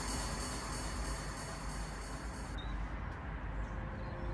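A vehicle passing in the street, a steady rumble and hiss whose high-pitched part drops away about two and a half seconds in.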